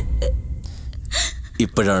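A man's gasping breaths, with his voice starting near the end.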